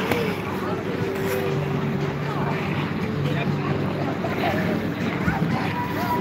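Open-air ice rink ambience: a steady hiss of skate blades on the ice, with the voices of many skaters.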